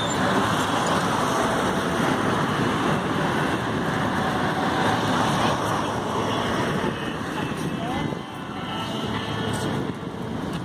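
Road traffic: cars passing on the adjacent street as a steady noise that eases off about seven seconds in.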